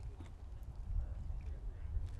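Footsteps on a raised stage platform as a person in sneakers walks across it, heard over a steady low rumble.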